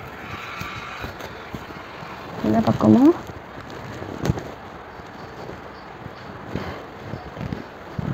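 Rustling and scattered knocks of handling noise on a clip-on microphone as hair is combed and pinned up close to it. The loudest is a sharp knock a little past the middle. A short vocal sound comes a little before it.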